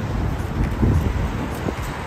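Road traffic passing on a busy street, with wind rumbling on the microphone.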